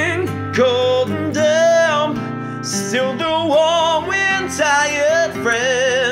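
Strummed steel-string acoustic guitar chords under a man's voice singing long, wavering held notes with vibrato, with no clear words.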